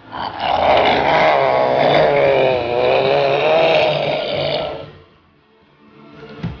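A man groaning loudly in pain, one long drawn-out groan of about four and a half seconds whose pitch wavers, dipping and rising again, then breaking off.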